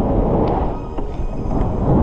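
Wind buffeting the action camera's microphone in flight under a paraglider: a loud, steady, rumbling rush with a couple of faint clicks.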